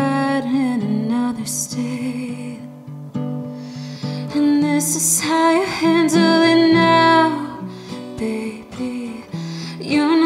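A woman singing a song with her own acoustic guitar, capoed on the neck. Her sung phrases come near the start and again in the second half, with a stretch where mostly the guitar carries on between them.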